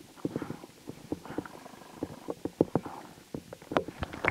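Rubber-soled Kickers boots treading and grinding on rough ground, a string of irregular crunches and scuffs several times a second, with a louder crunch near the end.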